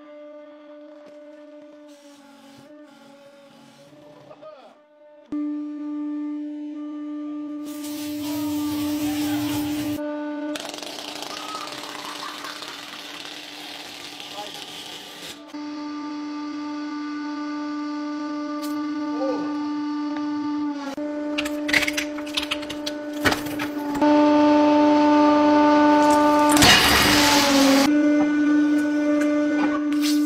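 Hydraulic press running with a steady low hum, broken by several bursts of crushing and squashing noise as objects give way under the ram. The hum cuts out and returns several times, and the loudest burst comes near the end.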